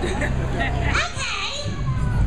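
High-pitched voices calling out, with a rising glide about a second in, over crowd noise and a low steady hum.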